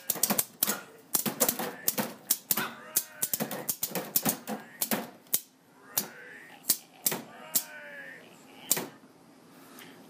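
Pneumatic groundbreaker zombie prop running a relay-switched sequence: a rapid, irregular clatter of air valves and cylinders, with its air pressure turned well down. A few drawn-out, wavering voice-like groans come in between the clicks, and the clatter stops a little before the end.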